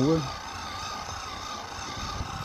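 A 24-volt, 200-watt friction-drive bicycle motor pressing on the tyre, running with a steady whine.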